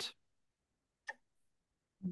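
Near silence with one short click about a second in.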